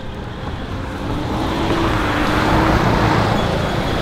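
Road traffic: a motor vehicle passing close by on the road, its engine and tyre noise swelling from about a second in and staying loud.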